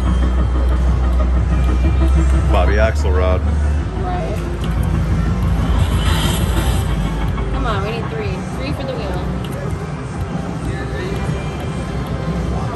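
Slot machine game music and sound effects from a Mighty Cash video slot playing spin after spin, with a loud low steady drone for the first few seconds. Voices are heard in the background.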